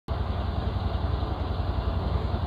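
Steady low hum with a fine, even pulse and a hiss above it, cutting in abruptly at the start.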